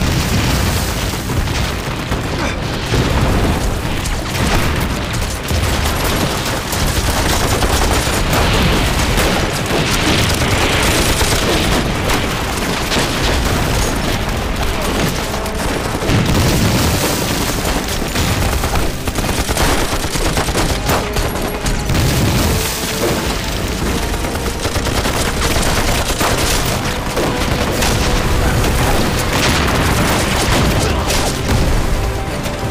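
Staged battle sound: explosions and crackling volleys of rifle and machine-gun fire, dense and loud throughout.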